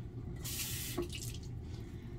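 Water running briefly from a bathroom sink tap, a hiss of about half a second, followed by a faint click.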